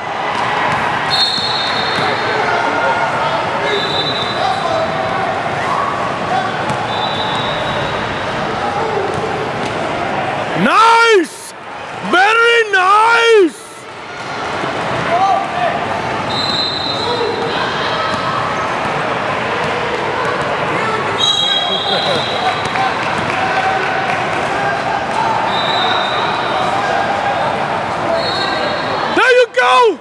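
Basketball dribbling and sneakers squeaking on a gym's hardwood court during a game, over spectators' chatter in an echoing hall. Short high squeaks come now and then, with a louder run of squeaks or shouts around the middle and again near the end.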